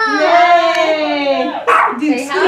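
A dog howling: one long, wavering, drawn-out cry that ends about one and a half seconds in, followed by a short harsh burst of sound.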